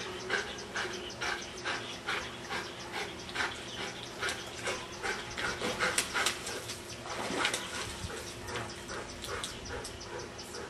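A dog vocalizing in short, repeated yelps and whines, about two or three a second, while swimming in a pool. Water splashes loudly about six seconds in.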